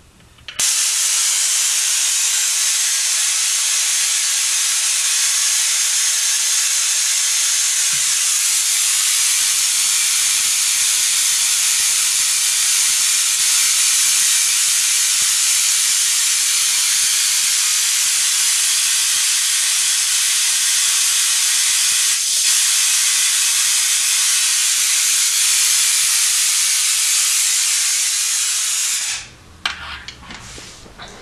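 Spark gap of a Tesla hairpin circuit firing continuously: a loud, steady, harsh hiss that switches on about half a second in and cuts off abruptly near the end. The sound shows the circuit is running, with its 12 V bulb lit.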